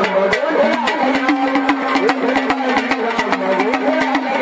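Gondhal devotional music: a sambal drum and small hand cymbals keep a quick, steady beat of sharp strikes under men singing, with one long note held from about a second in.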